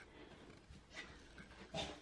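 Quiet room, with two faint short sounds: one about a second in and one just before the end.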